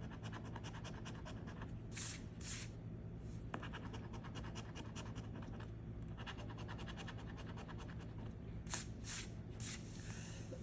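A coin scratching the coating off a scratch-off lottery ticket in rapid short strokes, with a few louder scrapes about two seconds in and again near the end.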